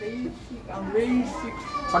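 Only children's voices: soft talking and murmuring from the group, with no other sound standing out.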